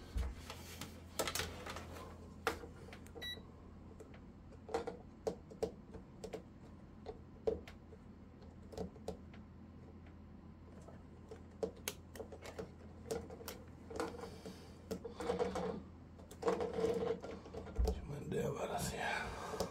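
Metal multimeter probe tips tapping and scraping on N-scale model railway rails: irregular small clicks as the tips are set down on rail after rail to check that the cut rail gaps are electrically open. A steady low hum runs underneath.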